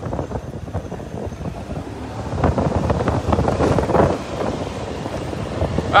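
Wind buffeting the microphone of a moving motorbike, with motorbike engines running underneath; it grows louder about two and a half seconds in.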